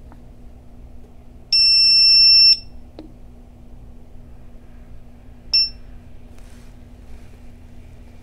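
Begode EX30 electric unicycle's beeper as its power is cycled: one long, high beep of about a second, then a short beep about three seconds later, with faint clicks of the power button between.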